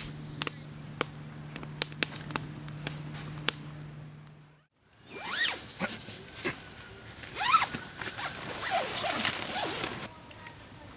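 Wood fire in a metal fire pit crackling, with sharp scattered pops over a low steady hum. This cuts off suddenly, and then a tent door zipper is pulled back and forth in several quick strokes.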